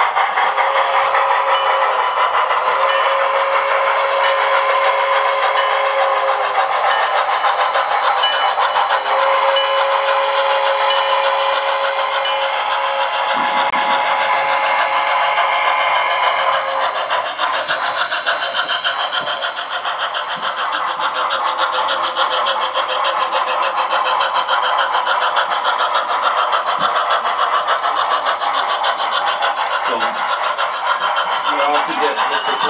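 HO scale model steam locomotive's DCC sound decoder running a train, with rapid steady chuffing. Over the first half it sounds long steady whistle tones in several blasts, which stop a little past halfway.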